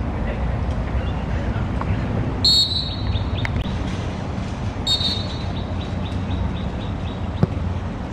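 Referee's whistle blown twice: a short, loud blast about two and a half seconds in and a longer one about five seconds in, over a steady background rumble and distant voices. A ball is kicked with one sharp thud near the end.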